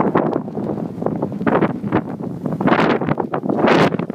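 Sandstorm wind gusting hard over the microphone, loud and unsteady, with the strongest gusts coming in surges about three quarters of the way through and near the end.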